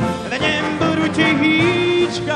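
Male pop singer singing live in Czech, backed by a big-band orchestra, holding a long note in the second half.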